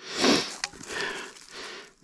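A person breathing and sniffing close to the microphone: three breaths, with a short click after the first.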